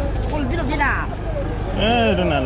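A woman's voice talking in short phrases over a steady low rumble.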